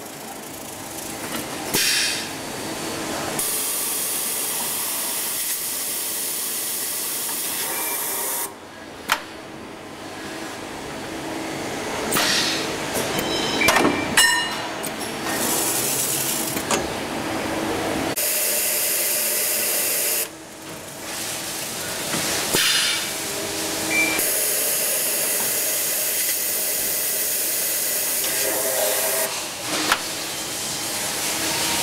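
Automatic bar unloader on a lathe running: a steady hiss that cuts off suddenly and comes back several times, with sharp metallic clicks and clanks near the middle.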